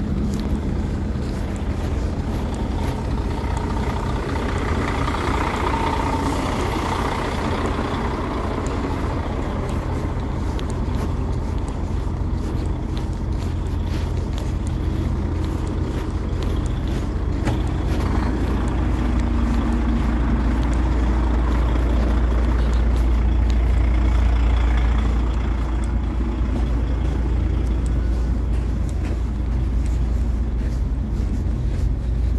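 Idling lorry diesel engines, a steady low rumble that grows louder past the middle and eases near the end.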